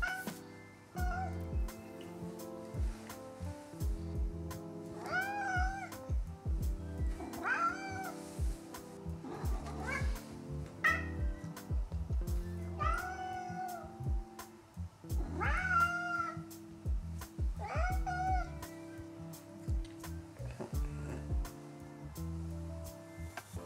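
Domestic cat meowing at its sleeping owner to wake him, about six meows a couple of seconds apart starting about five seconds in. Background music plays throughout.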